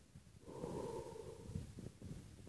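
A person breathing close to the microphone, one long breath about half a second in, followed by a few soft knocks near the end.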